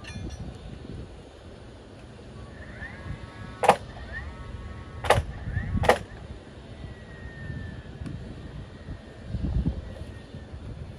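Three sharp nailing impacts, about a second and a half and then under a second apart, as the wooden deck frame is tacked to the house beam.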